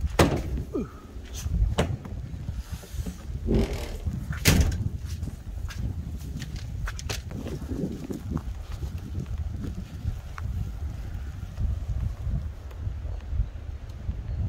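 Wind rumbling on the microphone outdoors, with several knocks and rustles of handling in the first five seconds, the loudest about four and a half seconds in, and faint scattered ticks after.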